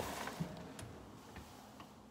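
Handling noise of a phone being jostled: a rustling knock right at the start, then a few light clicks about every half second, fading.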